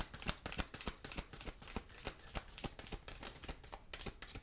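A deck of large oracle cards shuffled by hand, the cards slapping and sliding against each other in a quick run of short snaps, about five a second.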